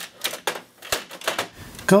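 Watercolor paper being loaded into an Epson printer: a quick, irregular series of sharp clicks and taps, about four or five a second, that stops about a second and a half in.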